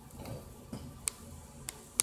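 Keystroke clicks from typing on a tablet's on-screen keyboard: a few separate sharp clicks at uneven intervals, with one softer, duller tap among them.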